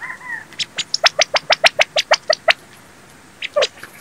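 A bird calling: two soft arched notes at the start, then a quick, even run of about a dozen sharp notes, roughly six a second, lasting about two seconds, and two more shortly before the end.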